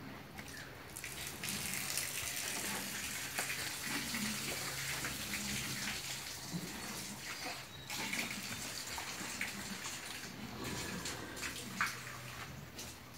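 Water running and splashing steadily onto a concrete floor, starting about a second in, with a brief dip near the middle.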